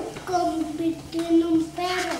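A young child singing in a high voice, holding a few steady notes of about half a second each with short breaks between them.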